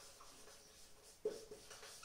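Faint marker pen squeaking and scratching on a whiteboard in short separate strokes as a word is written, with one sharper stroke a little over a second in.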